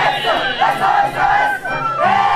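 A group of dancers whooping and shouting together in short rising and falling cries, over a carnival string band of violins and harp that keeps playing underneath.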